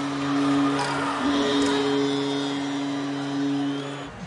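Arena goal music over the public address: a low chord of long held notes with a brief break about a second in, cut off suddenly at the end.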